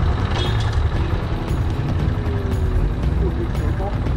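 A 200 cc motorcycle being ridden, its engine running under a steady wind rumble on the bike-mounted camera's microphone.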